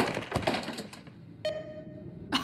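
A quick, irregular run of light clicks and taps, then a short steady tone starting about one and a half seconds in.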